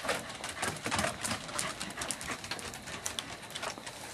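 Dogs' paws and claws clicking and tapping irregularly on wooden deck boards as corgis trot and move about.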